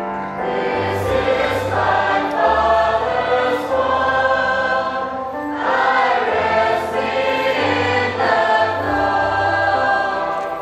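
Mixed choir of children and teenagers singing a hymn together, over sustained low accompanying notes.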